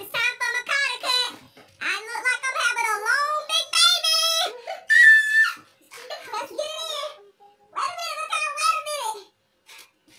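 Children's high-pitched voices talking and calling out in short bursts, with one long high held note about five seconds in.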